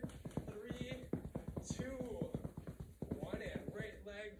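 Rapid footfalls: sneakers tapping quickly and unevenly on the floor as a seated exerciser runs his feet in place, thinning out near the end.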